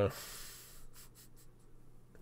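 Fingers scratching the stubble on a man's chin: a breathy hiss, then a few short scratchy strokes about a second in.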